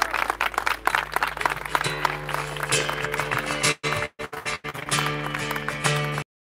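Crowd clapping, giving way about two seconds in to an acoustic guitar strumming chords. The sound drops out briefly a few times around the middle.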